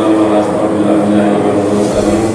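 Slow chanted recitation in long, held notes that step in pitch now and then.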